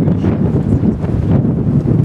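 Wind buffeting the camera's microphone: a loud, uneven low rumble.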